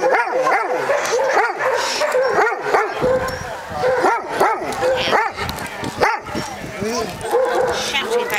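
Vizsla yelping and whining over and over, in high cries that rise and fall, about two a second.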